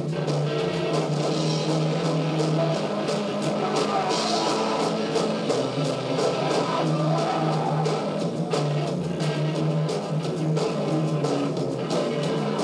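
Live rock band playing: electric guitars, bass and drum kit in a steady, continuous song, recorded with a muffled, lo-fi sound.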